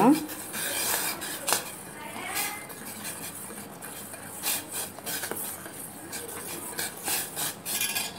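A spoon stirring dissolving agar agar in a stainless steel pot, scraping and tapping against the metal sides and bottom in an irregular run of scrapes and clinks.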